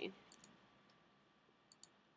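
Near silence with two faint clicks close together near the end: a computer pointer button clicking an on-screen button.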